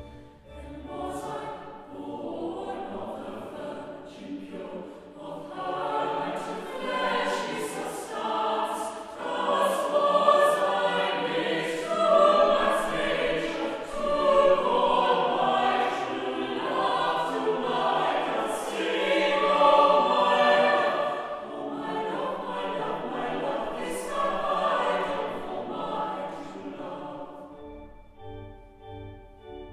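Mixed chapel choir singing a carol, the voices entering about a second in and stopping just before the end.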